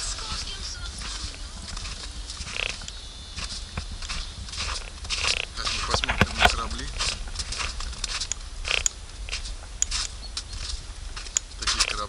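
Footsteps crunching in packed snow, an irregular run of short strikes, over a steady low rumble.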